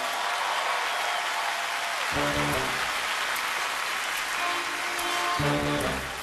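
Large audience applauding, with a band playing under it: one held note in the first two seconds, then two short musical hits about two seconds and five and a half seconds in, opening a number.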